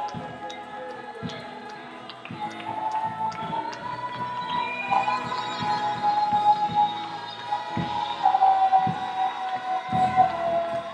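Live gospel worship music: an amplified singing voice holding long, sliding notes over low, regular beats, swelling louder from about a quarter of the way in.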